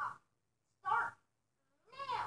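A voice making three short, high-pitched wordless noises, like a cartoon creature's, the last one dropping in pitch.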